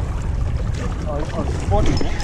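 Wind buffeting the camera microphone, a steady low rumble over the open sea.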